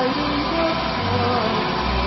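Heavy tow truck's diesel engine running with a steady low rumble in a pause between phrases of operatic group singing, with faint low sung notes in the first half second.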